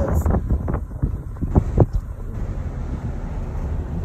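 A vehicle driving on a paved road, with a steady low engine and road rumble and wind buffeting the microphone. Two short knocks come close together about a second and a half in.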